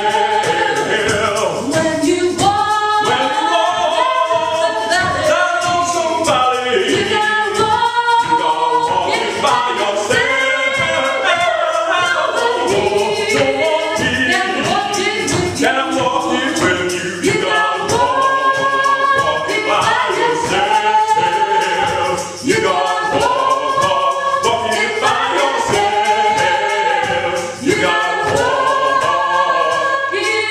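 A woman and a man singing a gospel song a cappella in two-part harmony.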